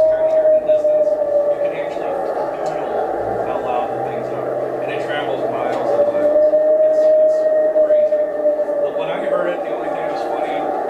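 Playback through a loudspeaker of the recorded 'Ohio howls', long wailing calls claimed as Sasquatch howls. One long held howl fades out about two seconds in, and a second begins about six seconds in, rising slightly, then falling away near the end.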